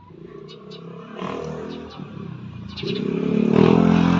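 A motor vehicle's engine running at a steady pitch, growing louder as it approaches.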